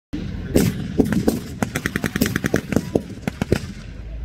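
Blank gunfire in a staged WWII battle: repeated single shots and a rapid machine-gun burst about one and a half seconds in, over the low running of armoured vehicles' engines.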